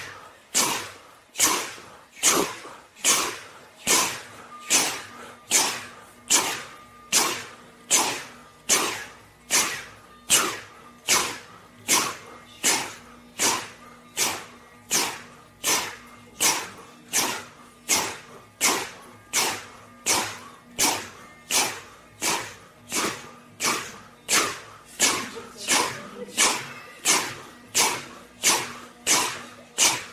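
Several people forcefully puffing out a sharp, breathy 'chu' sound together, over and over in a steady rhythm a little faster than one a second, like a little steam locomotive. This is a rhythmic 'chu' breathing exercise done with hands on the belly.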